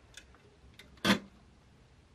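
A few light clicks, then a sharper knock about a second in, from handling the glass-paneled, metal-framed mini greenhouse while watering the plants inside it.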